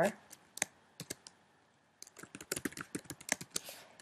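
Typing on a computer keyboard while entering a spreadsheet formula: a few scattered clicks in the first second, then a quick run of keystrokes in the second half.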